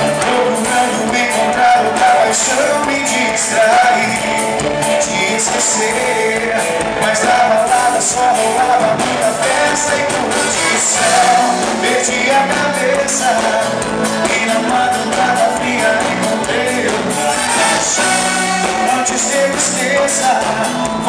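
Live band playing a song at full volume, with electric guitar and a sung lead vocal over the band.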